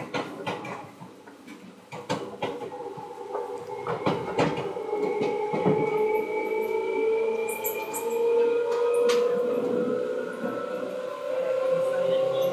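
Seibu 2000 series electric train pulling away. Irregular knocks and clanks come in the first few seconds, then a motor whine rises slowly in pitch as the train gathers speed.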